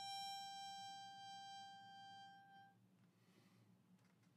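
Melodica holding one closing note, which fades out about two and a half seconds in. After that only a faint low hum remains.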